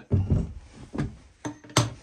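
Handling noises from a Milwaukee Fuel framing nailer's magazine as the strip of nails is taken out: a low thump, then three sharp metallic clicks, the last and loudest with a brief high ring.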